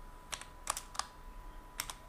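Typing on a computer keyboard: about six separate key clicks at uneven spacing, with a faint steady high tone underneath.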